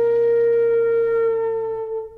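Flute holding a long, steady final note, with low accompaniment beneath it that stops shortly before the end while the flute note begins to fade.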